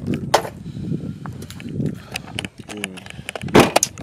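Car keys jangling, with a run of small clicks and knocks, then one louder thud about three and a half seconds in.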